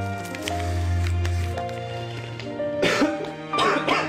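Gentle background music with sustained notes; near the end a man coughs twice into his fist.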